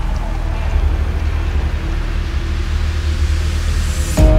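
Electro house track in a low, bass-heavy passage: a steady deep sub-bass rumble pulsing underneath, with only a faint haze above it.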